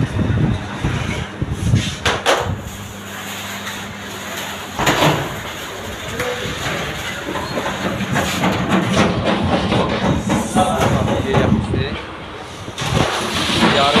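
Bakery machinery humming steadily, with a couple of sharp metallic knocks about two and five seconds in, under indistinct background voices.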